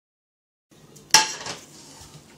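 A metal ladle clinking against a mixing bowl: one sharp, briefly ringing clink about a second in, then a lighter knock.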